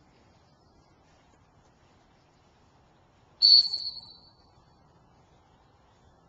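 A retriever-training whistle blown once about three and a half seconds in: one loud, high, sharp blast that trails off within about a second. A single blast is a handler's stop signal to a working retriever.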